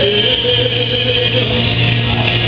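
Live rock music: a low note held steady under a higher, wavering pitched line, a sustained moment in the song.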